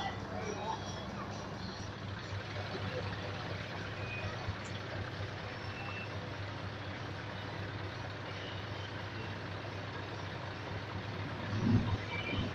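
Scania truck's diesel engine running slowly at low revs, a steady low rumble, with a brief louder burst near the end.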